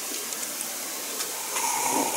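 A person sipping a drink from a mug, with a short slurp of liquid in the last half-second over a steady background hiss.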